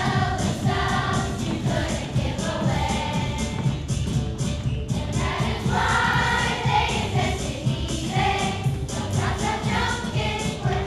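Children's choir singing a song in unison over a musical accompaniment with a steady beat.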